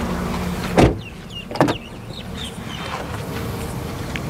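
Car doors of a Ford Figo: one shuts with a heavy thump a little under a second in, and a second, sharper door clunk follows about a second later. Birds chirp faintly between them.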